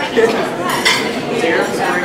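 Cutlery and dishes clinking, with a few sharp clinks near the start and around a second in, over a crowd's background chatter.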